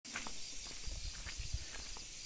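Footsteps and bumps of a hand-held phone being moved while walking: irregular low thuds, densest about a second in, with a few light clicks over a steady high hiss.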